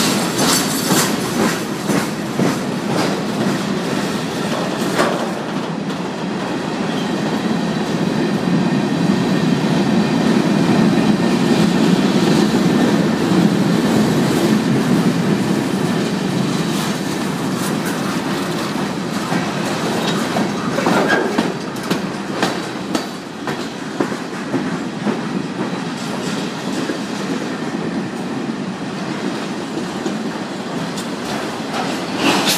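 Cars of a long freight train (boxcars, a tank car, then auto racks) rolling past at speed: a steady rumble of steel wheels on rail with the clickety-clack of wheels over rail joints, the clacks sharper about two-thirds of the way through. A faint thin ringing from the wheels sits above the rumble.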